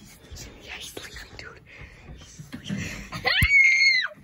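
Hushed whispering, then about three seconds in a sharp click and a loud high-pitched squeal that rises quickly and is held for under a second, the loudest sound here.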